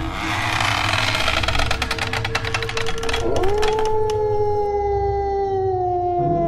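Horror sound effect: a rough, rumbling, crackling noise, then about three seconds in a long wolf howl that swoops up and slowly falls in pitch.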